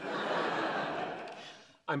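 Studio audience laughing, a swell of laughter that fades out shortly before the end.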